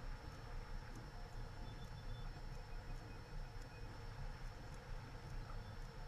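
Faint room tone: a steady low rumble and hiss on the microphone, with a few faint clicks of a computer mouse placing points.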